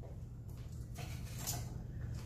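Quiet room tone with a low steady hum, and a couple of faint soft noises about a second in.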